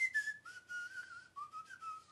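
A man whistling through his teeth: a thin, airy whistle with a hiss of breath over it, a short phrase of notes that steps downward in pitch.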